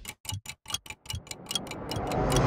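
Film projector sound effect: rapid, even clicking about eight times a second.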